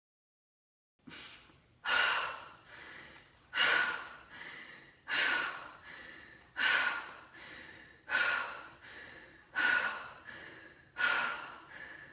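A woman doing Tummo breathing: forceful inhales and exhales through an open mouth, starting about a second in. Each cycle is a loud breath followed by a softer one, about every second and a half.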